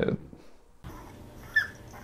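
Small dog, a chihuahua, whimpering: two short, high, rising whines in the second half, over faint room noise.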